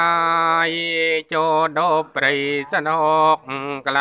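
A chanter intoning the sung blessing of a Khmer-style bai si su khwan (soul-calling) ceremony, holding one long note at the start, then going on in short rising and falling phrases with brief breaks for breath.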